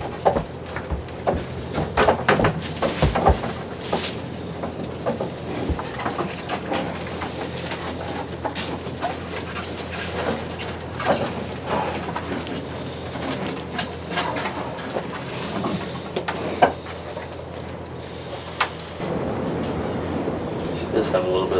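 Barn stall sounds: scattered knocks, clicks and rustles over a steady low hum.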